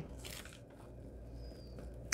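Faint handling of paper: a torn paper cutout lifted and laid onto a folded sheet of copy paper, with a few soft rustles over a steady low hum. A brief faint high whistle is heard about a second and a half in.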